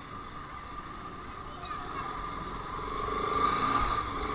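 Bajaj Pulsar RS200 single-cylinder engine running as the motorcycle rolls slowly along a street, getting gradually louder toward the end, over a steady high-pitched whine.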